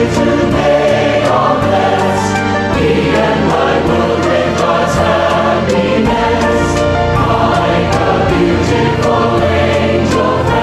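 A choir singing a devotional hymn in sustained, held notes.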